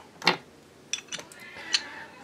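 Small metal clicks as a 1911 pistol slide with its guide rod seated is handled and turned over in the hands: a few light ticks about a second in and one more near the end.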